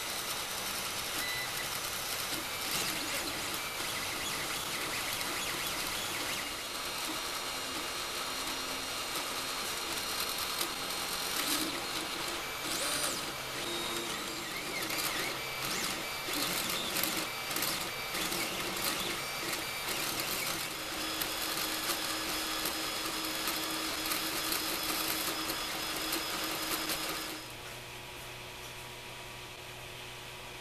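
Creality 3D printer running a print: the stepper motors whir and warble in shifting tones as the print head moves. Near the end it drops to a quieter, steady hum.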